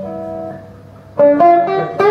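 Cort semi-hollow electric guitar played through a SortinoGP distortion pedal, with the guitar's volume rolled back for a cleaner tone. A held chord rings and fades, then new notes are picked about a second in, louder.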